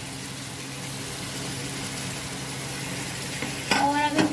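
Chopped tomatoes sizzling in hot oil and spice masala in a frying pan: a steady, even hiss with a faint low hum underneath.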